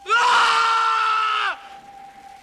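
A man screaming: one loud, sustained, high-pitched scream held about a second and a half, dropping slightly in pitch before it cuts off abruptly.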